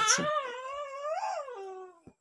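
A single long, high-pitched whine, voice-like, that wavers in pitch, rises around the middle and falls away before fading out near the end.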